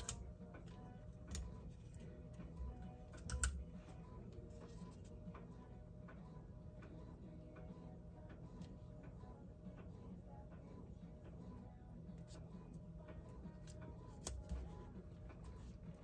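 Sheets of sublimation paper and tape being handled on a cutting mat: a few soft rustles and taps, the clearest about three seconds in and again near the end, over a low steady hum.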